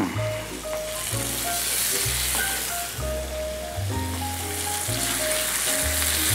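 Raw pork rib eye steaks sizzling in hot oil in a frying pan as they are laid in, a steady frying hiss, under background music with slow-changing bass and melody notes.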